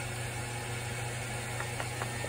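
Steady low mechanical hum from a Heidi Swapp Minc Mini foil laminator switched on and heated, with a couple of faint clicks near the end.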